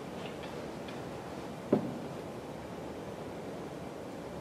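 Steady lecture-room hiss with a few faint ticks near the start and one short knock a little under two seconds in, from handling at the lectern and laptop.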